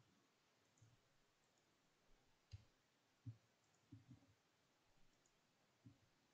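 Near silence with a few faint, short, low taps scattered through, about six in all, two close together around four seconds in.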